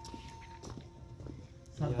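Soft footsteps of two men walking on a dirt path, a handful of light steps.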